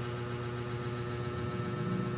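Steady electrical hum, several fixed tones held level under a faint hiss, with no change through the pause.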